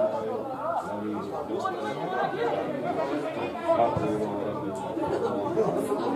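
Several people talking over one another close to the microphone: spectator chatter at the touchline.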